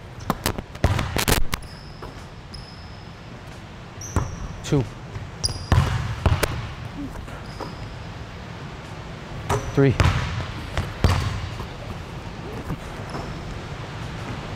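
A basketball bouncing and being caught on a hardwood gym floor during a catch-and-shoot drill: sharp knocks, bunched in the first second and a half and again around the middle and about ten seconds in. Short high squeaks of sneakers on the hardwood come between them.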